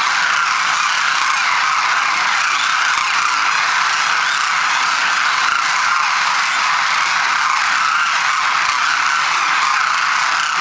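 A large flock of demoiselle cranes calling all at once: a dense, steady din in which no single call stands out.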